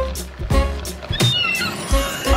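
Upbeat cartoon background music with a steady beat, with a short, high cartoon seagull squawk a little over a second in.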